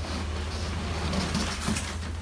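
Cardboard shipping box sliding up and off a shrink-wrapped inner box, a steady scraping rustle of cardboard on cardboard and plastic, over a constant low hum.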